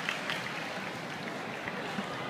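Faint audience noise in a large hall: a low murmur with a few scattered small sounds, no clear voice or music.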